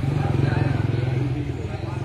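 An engine running steadily, a low, even hum with a rapid pulse, with faint voices behind it.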